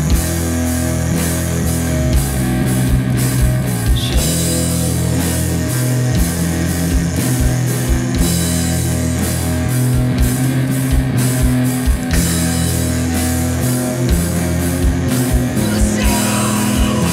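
Heavy rock band playing: distorted electric guitar and bass holding slow, low notes over a drum kit, with cymbal crashes about every four seconds.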